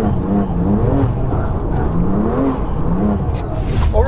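Twin-turbo straight-six of a tuned BMW M2 Competition, running on larger TTE740+ turbos, heard from inside the cabin while driving. Its revs rise and drop back again several times.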